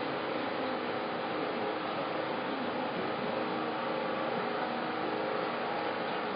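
Steady background noise, an even hiss with a faint constant hum and no distinct events.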